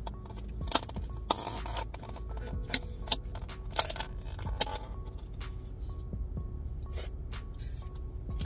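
A takeout food container being handled and opened: a string of irregular sharp clicks and crinkles.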